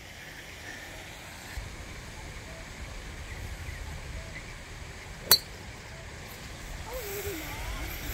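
A golf driver striking a ball off the tee once, about five seconds in: a single short, sharp click of club face on ball, over a low rumble of wind on the microphone.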